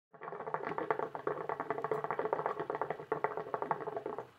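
Hookah water bubbling as smoke is drawn through the hose: a rapid, irregular gurgling patter that keeps going without a break.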